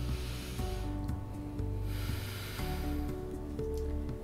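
A woman taking a deep breath, heard as two breathy rushes, one at the start and one about two seconds in, with a mandibular positioning simulator holding her jaw in position. Background music with steady sustained notes plays throughout.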